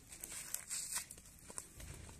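Faint scuffling of a staged fight on bare dirt ground: several short rustles and scrapes of feet shuffling and clothing rubbing as one man grapples and throws another.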